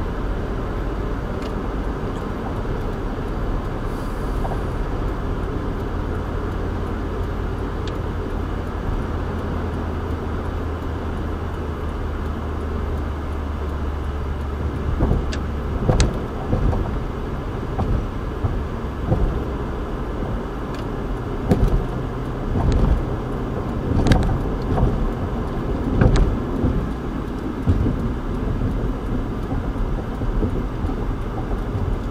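Road noise of a car at highway speed, heard from inside the cabin: a steady low rumble of tyres and engine. From about halfway through, as the car slows onto an exit ramp, a series of irregular thumps and knocks comes in over the rumble.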